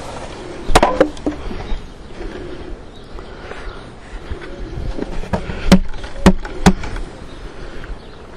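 Sharp wooden knocks as a bee-covered wooden frame is struck against the hive box to knock the swarm of honey bees into it: two knocks about a second in, then four more between about five and seven seconds.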